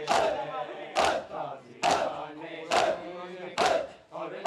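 A crowd of mourners doing matam, beating their chests in unison about once a second, with a chanted shout from the crowd on each beat and chanting voices in between.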